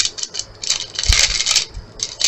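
Small plastic bag crinkling as it is squeezed and shaken to empty the last of its glitter into a plastic cup, in quick crackly bursts, with a dull bump about halfway.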